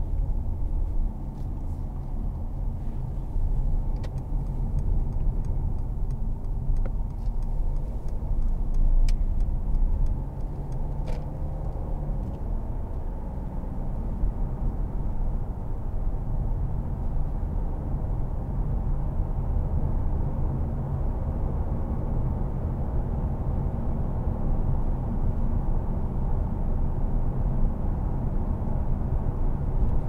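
Cabin noise of a Mercedes-Benz C300 BlueTEC Hybrid driving at speed: a steady low rumble of its 2.1-litre four-cylinder diesel and the tyres on the road. A few faint clicks come in the first ten seconds.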